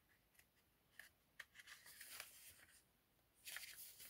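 Pages of a paper coloring book being turned: faint rustling and light ticks of paper, with a louder swish of a page near the end.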